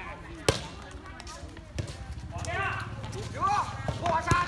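Players' hands striking a light air volleyball during a rally: three sharp slaps, the loudest about half a second in, another near two seconds and the last near the end as a player attacks at the net. Players shout between the last two hits.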